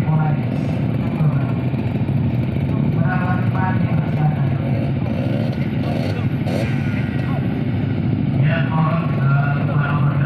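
Several trail dirt bikes idling together, a steady low engine drone, with voices over it now and then.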